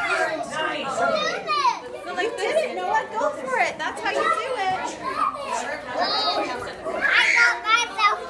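Several young children's voices chattering and calling out over one another, high-pitched and overlapping.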